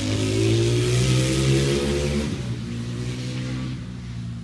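Motorcycle engine running at high revs on the track. Its pitch drops about two seconds in and the sound fades as the bike moves away.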